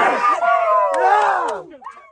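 Rugby league team shouting its huddle cry together, a crowd of young male voices. It ends in a long drawn-out yell that falls in pitch and dies away near the end.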